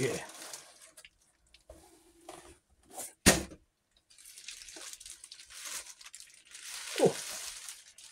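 Bubble wrap and plastic packaging rustling and crinkling as it is handled and drawn out of a cardboard box, with one sharp click about three seconds in.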